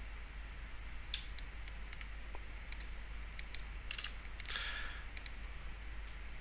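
Computer mouse and keyboard clicks: about a dozen short, sharp clicks scattered over a few seconds, several in quick pairs, over a faint steady low hum.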